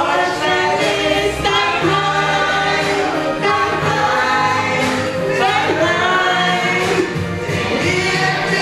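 Two women singing a song live into microphones over an amplified musical accompaniment with steady bass notes.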